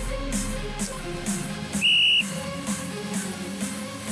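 A single short, high whistle blast about two seconds in, over background electronic music with a steady beat.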